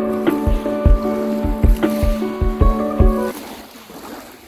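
Background music with a steady beat and held chords, which stops about three seconds in. Small waves washing on a pebble shore, with wind on the microphone, are left after it.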